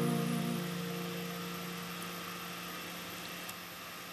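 A final strummed acoustic guitar chord ringing out and slowly fading away, with the higher notes dying first, about half a second in.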